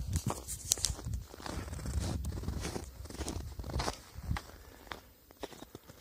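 Bare feet running on snow: a quick, uneven run of soft footfalls. The steps thin out and the sound grows quieter about four and a half seconds in.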